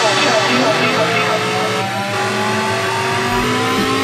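Breakdown in a drum-and-bass mix: the bass and drums drop out, leaving held synth tones and slowly rising, engine-like pitch sweeps, with a sampled voice.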